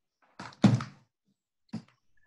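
A loud thump about half a second in, then a short, fainter knock about a second later.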